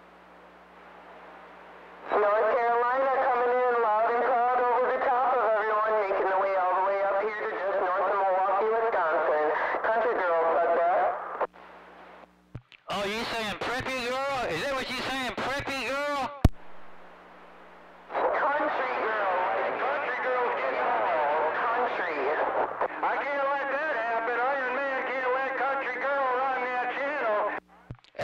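Distant voices coming in over a CB radio receiver on channel 28, garbled and hard to make out, in three stretches of transmission with a steady hum underneath.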